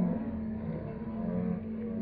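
Muffled music: a steady low held note with a wavering melodic line above it.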